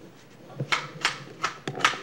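A handful of sharp, irregularly spaced plastic clicks in the second half as the pump end of a Don's Sewer Squirter water-squirter toy is worked by hand.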